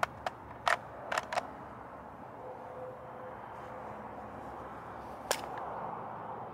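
Steel .223 AK magazine being fitted into a Zastava M90 rifle's magazine well: a few light metallic clicks and knocks in the first second and a half, then one sharp click a little after five seconds in as the magazine is slapped up to engage the catch. The tight fit means it will not lock without a slap.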